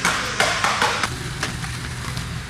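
Skateboard wheels rolling over concrete, with a run of sharp clacks from the board, about five in the first second and a half.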